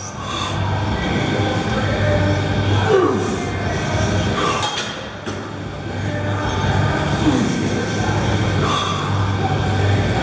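Plate-loaded 45-degree leg press sled rolling up and down its rails through repeated reps, a steady low rumble with a falling squeal about three seconds in and again about seven seconds in.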